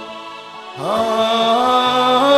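Slow devotional chanting in long held notes. One note fades away, then a new one slides up into place just under a second in and holds, bending slightly.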